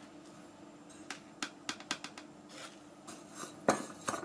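A spoon clinking against a bowl as coarse salt and sugar are spooned in: several separate sharp clicks, the loudest near the end.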